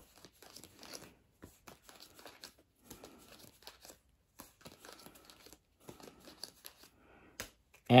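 Playing cards being dealt one at a time onto a cloth-covered table: a run of soft, irregular flicks and slides, a few each second.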